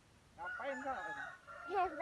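A rooster crowing once, a drawn-out call of about a second, followed near the end by a child's voice calling out.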